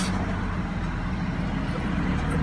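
Steady low rumble of a car's engine and tyres, heard from inside the moving car's cabin.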